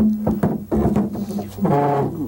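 A man's voice holding long, level hesitation sounds ("uhh", "mmm") while he pauses mid-sentence, with a couple of soft knocks near the start.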